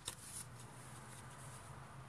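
Faint rustle of Bible pages being leafed through, with a couple of soft ticks in the first half second over low room hiss.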